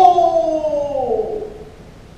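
The drawn-out tail of a man's loud kiai shout, falling in pitch and fading out about one and a half seconds in.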